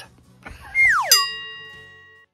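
A cartoon sound effect punctuating a joke: a whistle-like tone slides quickly down in pitch, then a single bell-like ding rings out and slowly fades.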